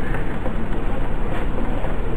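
Steady background hiss and rumble with no distinct events, heard in a pause between spoken phrases.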